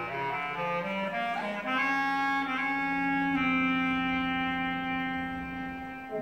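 Concert band of woodwinds and brass playing: a quick run of moving notes, then a long held chord that shifts once and fades away near the end.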